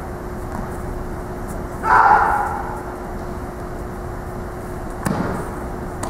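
Throws and falls on a wrestling mat in a large, echoing gym hall with a steady hum. There is a loud burst about two seconds in and a sharp slap about five seconds in.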